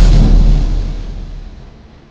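A cinematic boom sound effect: one sudden hit with a deep rumble that fades away over about two seconds. It is a horror-drama stinger marking a shocking reveal.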